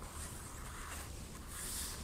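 Faint rustle of a picture book's paper page being turned, swishing about a second and a half in over quiet room tone.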